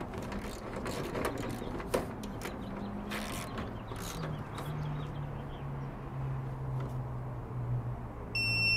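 Ratchet and socket of an ACDelco torque wrench clicking as a main-breaker nut is tightened toward 45 inch-pounds. The clicks are scattered, mostly in the first half, with a faint low steady hum from about halfway.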